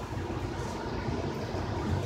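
Steady low hum with an even faint hiss: background room noise, with no distinct knocks or pours standing out.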